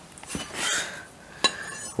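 Light metal clinking as a steel U-bolt is picked up and handled, with one sharp click about a second and a half in.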